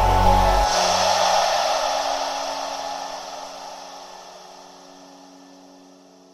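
The end of a background electronic music track: the drums and bass drop out under a second in, leaving a hissy wash and a low held note that fade slowly away.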